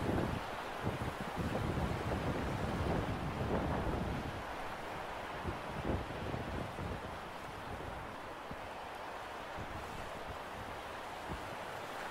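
Wind buffeting the microphone of a handheld camera on an exposed clifftop, gusty rumbles for the first few seconds, then easing to a steadier rushing hiss.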